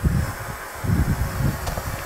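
Tesla Cybertruck air suspension letting air out with a steady hiss as it drops out of extract mode after the door is shut, with low gusts of wind on the microphone.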